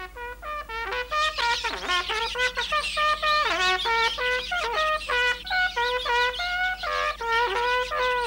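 Trumpet playing a lively melody of short notes, with a few notes sliding down in pitch.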